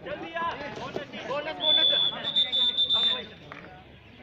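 Players and spectators shouting as a kabaddi raider is tackled. About a second and a half in, a whistle sounds one long, steady, high blast that lasts about a second and a half and is the loudest sound in the clip.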